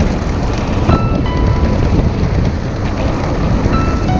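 Wind buffeting the microphone of an e-bike ridden at speed: a loud, steady, low rumble, with a few short faint tones about a second in.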